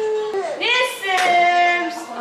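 A high-pitched voice singing in sing-song held notes: one held note, a rising swoop, then another long held note.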